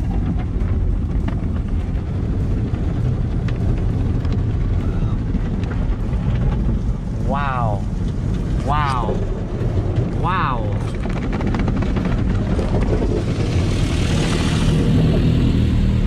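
Automatic car wash heard from inside the car: a steady low rumble of the wash machinery and water on the car body. Three short rising squeals come about a second apart in the middle, and a hiss of spray builds near the end.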